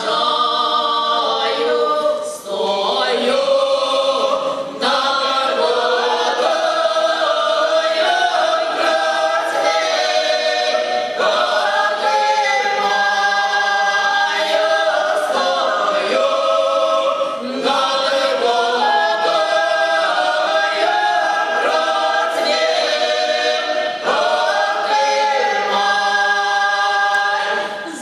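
A small mixed vocal ensemble singing a Ukrainian folk song in close harmony, unaccompanied, a strong woman's voice leading. Long held notes, with a few brief breaks between phrases.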